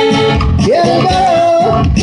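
A live band playing a corrido, loud and continuous. A long held melody note slides up about half a second in and holds over the band's accompaniment.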